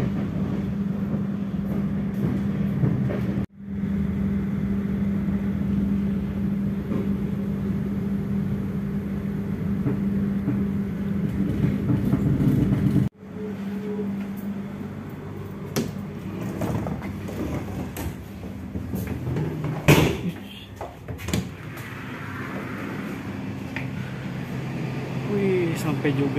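Passenger train coach running into the station, with a steady hum and rumble of the moving train. In the quieter second half come a few sharp knocks and clatters, the loudest about twenty seconds in.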